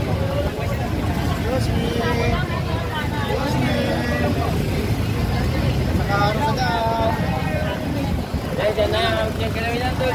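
Busy street sound: several people talking in the background over a steady low rumble of vehicle engines.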